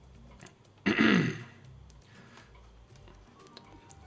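A man clearing his throat once, about a second in: a short, loud, rasping burst.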